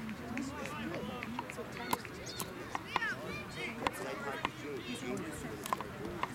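Distant shouting and calling from players and onlookers on a soccer field, with several short sharp knocks scattered through.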